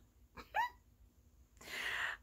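A woman's short, high-pitched vocal sound about half a second in, then an audible breath in near the end.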